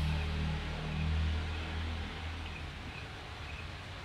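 A low hum that fades away over the first two or three seconds, with no speech.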